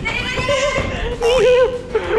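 An edited-in comic sound effect: a wavering, warbling tone that rises and falls several times, over the video's background sound, with a short hiss about a second in.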